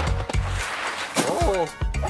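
Children's cartoon background music with a steady beat, with a rushing whoosh of snow sliding off a roof and landing on a character, followed by a short voice cry about halfway through.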